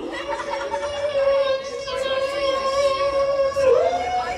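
A man's voice imitating a synthesizer through a handheld microphone: one long, steady buzzing tone held at a single pitch, which dips and then slides up to a higher held note near the end.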